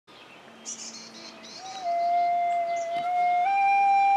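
Flute played by a child: after a few high bird chirps, one long held note begins about a second and a half in with a slight scoop up, then steps up to a higher held note near the end.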